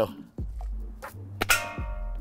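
A sharp metallic ping about one and a half seconds in that rings briefly and fades: steel ball bearings from a balloon slingshot striking an aluminium soda can.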